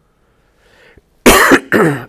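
A man coughs twice, two short harsh coughs in quick succession about a second and a quarter in, after a faint breath.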